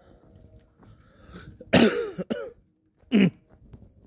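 A man coughs twice: a longer, rough cough a little under two seconds in, then a short one about three seconds in.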